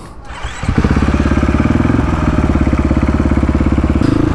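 A 450cc dirt bike's single-cylinder four-stroke engine picks up under throttle a little under a second in as the bike pulls away, then runs on with a steady, even pulsing beat.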